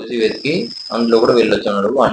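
A person speaking in narration, with a thin, steady high tone running under the voice for about the first second and a half.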